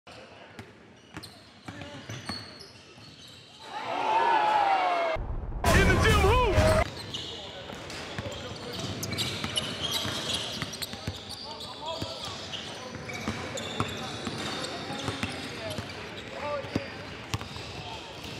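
A basketball dribbled on a hardwood gym floor, sharp bounces amid the chatter and calls of players and onlookers echoing in a large gym. About four to seven seconds in comes a louder stretch of high, gliding squeals, which fits sneakers squeaking on the court.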